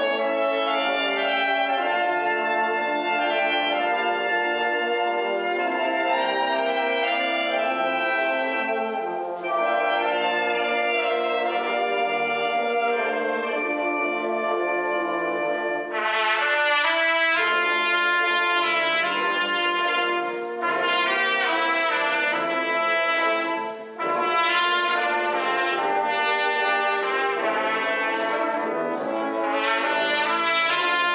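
Brass band playing, with a solo trumpet entering about halfway through and standing out brightly above the band.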